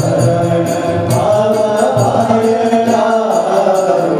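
Male voices chanting a devotional Hindu hymn in long held notes, with violin accompaniment and a regular beat of sharp, high percussion strikes.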